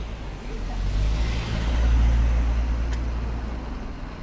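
A car passing close by: its engine rumble and tyre hiss rise to a peak about two seconds in, then fade.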